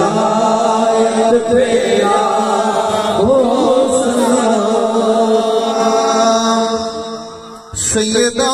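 A man's voice singing a naat through a microphone and PA, in long, wavering, drawn-out notes. The sound dips near the end and then cuts in abruptly.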